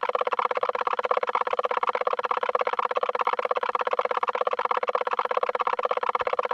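A steady, rapidly pulsing drone, about a dozen pulses a second, unchanging throughout.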